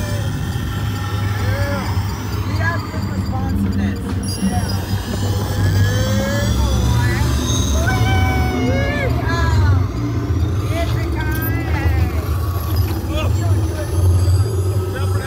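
Steady low rumble of the Test Track ride vehicle running along its track, with the ride's onboard soundtrack playing and pitched sounds gliding up and down over it.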